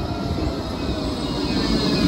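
Blackpool's Bombardier Flexity 2 tram pulling into a stop and running past at close range: a rumble of wheels on the rails, with a high whine coming up in the second half as it comes alongside.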